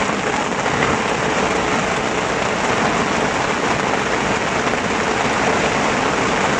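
Heavy rain pouring steadily onto grass and muddy ground in a summer thunderstorm downpour.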